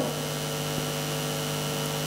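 Steady electrical mains hum in the recording's sound system: a low buzz with many overtones, unchanging in pitch and level.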